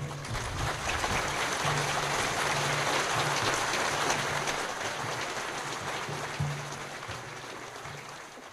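A crowd applauding: dense clapping that starts at once and slowly thins out toward the end.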